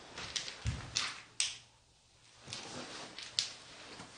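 Footsteps and a few light clicks and knocks of someone walking across a hard floor. All sound cuts out for about half a second midway.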